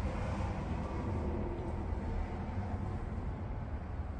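A steady low hum with a faint hiss over it, with no distinct events.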